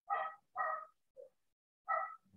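A dog barking: four short barks in about two seconds, the third one faint.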